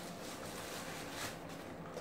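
Faint rustling and crinkling of a plastic bubble-wrap bag as a small cardboard box is pulled out of it.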